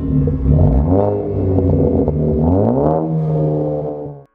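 A car engine revving, its pitch climbing twice: about a second in and again near the end.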